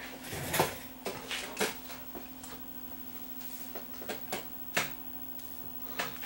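Irregular light clicks and taps, about nine in the first five seconds, over a steady low hum.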